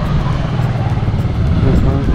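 Steady low rumble of motor traffic on a street, with a motorcycle riding past.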